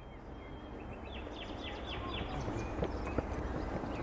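Outdoor rural ambience: a steady rustling noise that slowly grows louder, with a bird giving a quick run of short, falling chirps about a second in.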